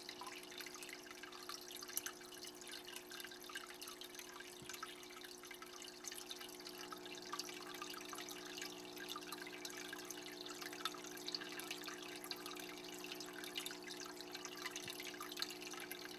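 Faint home aquarium filter running: water trickling and dripping with small bubbly crackles over a steady low hum.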